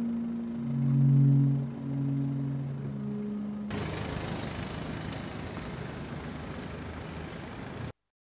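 Held low music notes over faint background noise, then from about four seconds in a car engine running with a broad rumble, which cuts off suddenly near the end.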